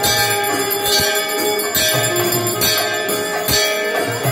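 Temple 'sarva vadya', all the ritual instruments played at once: many bells ringing continuously, irregular drum beats, and a held melodic line that steps between notes.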